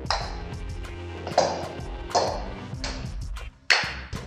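Background music playing, with a few sharp pings of a table tennis ball being struck by the paddle and bouncing on the table during a fast serve.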